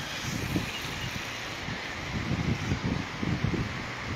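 Steady outdoor background noise: wind buffeting the microphone in an irregular low rumble, over an even hiss.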